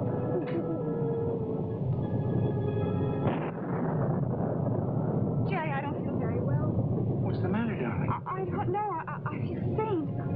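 Dramatic music holding a chord, which cuts off about three and a half seconds in, over a steady rush of storm sound effects: rain, with low rumbling. In the second half, pitched sounds waver up and down.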